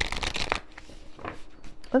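A tarot deck being riffle-shuffled by hand: a dense rattle of flicking cards that ends about half a second in, followed by a few light clicks of cards.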